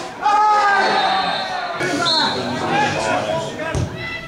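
Men's voices shouting on and around an outdoor football pitch during play, with a single dull thud near the end.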